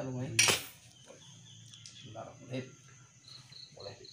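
A machete blade gives one sharp metallic clank about half a second in, then goes quiet, over crickets chirping steadily in the background.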